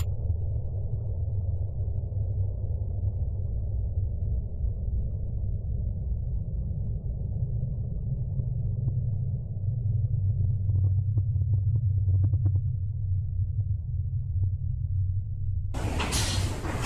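A steady low rumble, strongest in the deep bass, with a few faint ticks about two thirds of the way in. Just before the end a loud rushing hiss of storm wind and rain cuts in suddenly.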